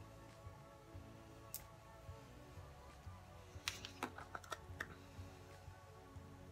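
Faint background music with light plastic clicks and taps from a small cosmetic jar being handled: one click about a second and a half in, then a quick cluster of taps around four seconds in.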